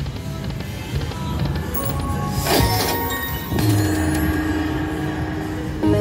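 Fu Dai Lian Lian video slot machine playing its game music and spinning sounds during a free game, with a brief swish about two and a half seconds in and a louder burst near the end as the reels land on a small win.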